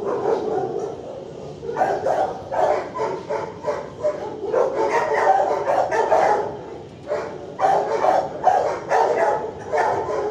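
Several dogs barking in a shelter kennel block, short barks overlapping one after another, easing briefly about four seconds in and again near seven seconds.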